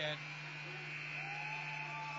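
Ice-hockey arena end-of-period horn sounding one steady, high-pitched blast of about two seconds, marking the end of the period. A steady low electrical hum runs underneath.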